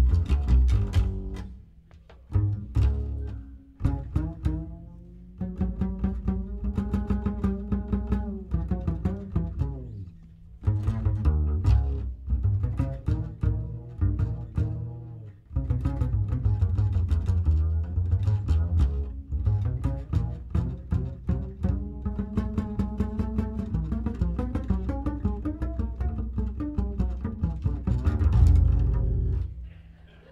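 Upright double bass played pizzicato in a jazz bass solo: phrases of plucked notes with short pauses between them, closing on a loud final note near the end.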